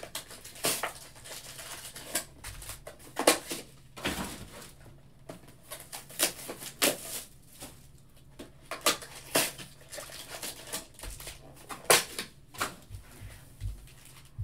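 Hands unwrapping and handling trading-card packs: plastic wrappers crinkling and cards flicking against each other in irregular sharp crackles and clicks, the loudest about three seconds in and near the end.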